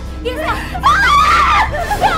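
A woman's high-pitched, wavering wail of crying, loudest about a second in, over background music.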